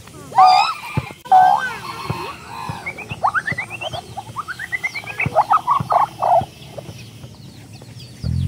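Comic animal-like sound effects: a loud croaking call with an upward hook, repeated twice in the first second and a half, then a string of rising squeaky glides and a quick run of short chattering calls that stops about six and a half seconds in.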